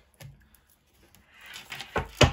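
Hand handling a deck of tarot cards on a wooden table: a light tap, a short quiet, then a soft rubbing slide ending in a sharp tap near the end.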